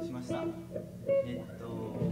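Electric guitars and bass plucked quietly and loosely between songs, with scattered held notes and low voices in the room.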